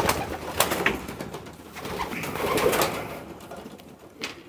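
Racing pigeons cooing in a loft, with sharp clicks of flapping wings in the first second.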